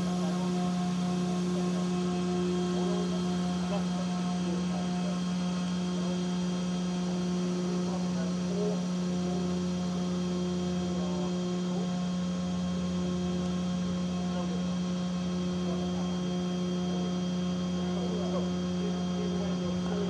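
Steady machinery hum from the 70-metre deep-space tracking antenna as the dish slowly turns: one strong low tone with fainter overtones over a low rumble, unchanging throughout.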